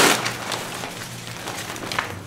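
Nylon fabric of a collapsible studio softbox rustling as it is unfolded and lifted. It starts with a loud swish as it opens and tails off into softer rustling.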